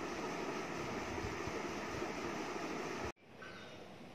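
Steady background noise, like a fan or room hum, that cuts off suddenly about three seconds in, followed by fainter ambient noise.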